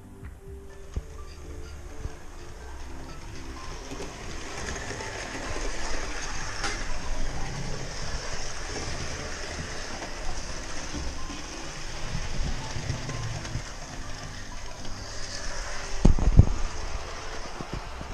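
00 gauge model locomotive and coaches running round the track, a steady whirring rumble of motor and wheels on rail that grows louder after a few seconds. Faint music fades out in the first few seconds, and there is one thump near the end.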